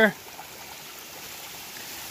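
Small creek running over rocks: a steady rush of flowing water.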